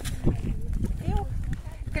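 A woman's voice, a few short words, over wind buffeting the microphone with an uneven low rumble.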